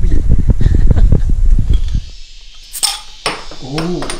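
Loud low rumble of outdoor noise with voices, cut off about two seconds in; then, in a quieter room, two sharp clinks about half a second apart, glass bottles knocking together, and a brief voice.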